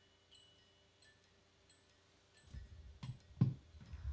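Near silence, then about two and a half seconds in, low rumbling and two soft thumps from a handheld microphone being lifted off its stand and handled.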